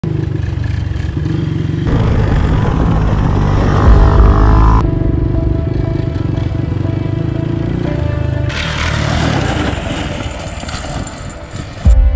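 ATV engines running during trail riding, heard in several abruptly cut segments, with music playing alongside.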